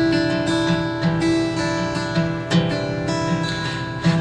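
Acoustic guitar strummed in a steady rhythm of chords, with no singing, slowly getting a little softer.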